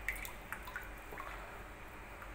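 Water dripping faintly from a mesh fish net held over a tub of water, a handful of scattered drips.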